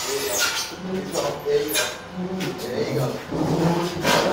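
Men's voices talking and calling out to each other indistinctly, in short broken phrases.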